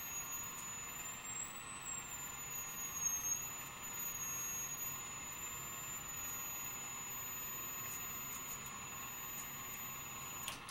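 High-voltage power supply energising an ion lifter at close to twenty kilovolts: a thin, high-pitched whine from its driver circuit that wavers slightly in pitch, over a steady hiss.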